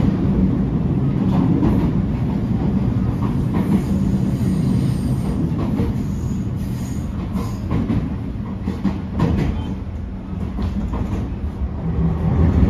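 Running sound heard inside a JR East GV-E400 series diesel-electric railcar: a steady low hum of the drive with wheel-on-rail rumble, easing off gradually until about ten seconds in. A few sharp clicks of the wheels over rail joints come near the end.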